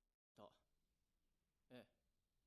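Near silence, with two brief, faint bits of a voice speaking: one about half a second in and one near the end.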